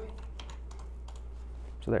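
Several faint computer keyboard clicks, a few keystrokes as a key is pasted into a terminal, over a steady low hum.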